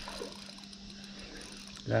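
Insects buzzing steadily in the surrounding bush, with a faint low hum beneath.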